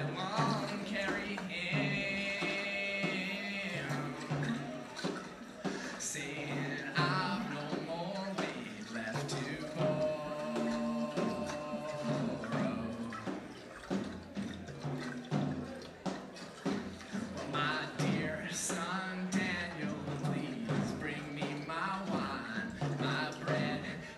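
Live symphony orchestra with a band, including acoustic guitar, playing an instrumental passage between sung verses, with long held notes over a steady bass line.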